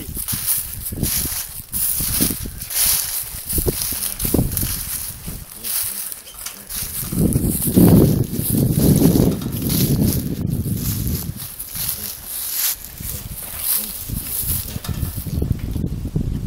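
Footsteps crunching through dry fallen leaves while approaching a box trap of feral hogs. About halfway through comes a louder, low, rough stretch of grunting from the trapped hogs.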